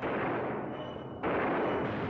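Gunshots from the soundtrack of an old film, each a sudden loud crack that rings on and dies away slowly; a fresh shot comes about a second in.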